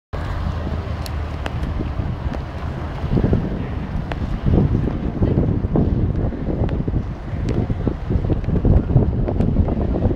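Wind buffeting the camera microphone: a loud, irregular low rumble that comes in gusts and grows stronger about three seconds in.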